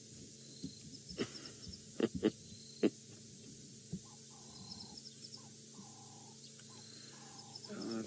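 Quiet bush ambience. A bird gives a run of five or six short, even hoots in the second half, over faint high chirping from small birds. A few sharp knocks come in the first three seconds.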